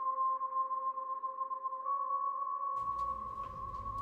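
A steady, high-pitched electronic tone held on one pitch, with a fainter lower tone under it, stepping slightly up about halfway through; near the end a low rumbling drone comes in beneath it.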